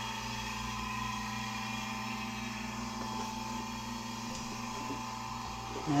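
Marine air-conditioning unit running: a steady hum with a few held tones.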